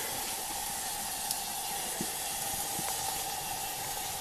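Thick green nettle (sisnu) curry simmering in a karahi over a wood fire while it is stirred with a long ladle: a steady bubbling hiss with a few light clicks.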